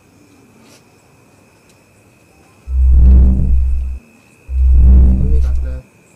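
After a quiet stretch, a very loud, deep booming sound starts about two and a half seconds in and comes again about two seconds later, each boom lasting just over a second, like an eerie bass sound effect. A wavering, voice-like tone sounds near the end.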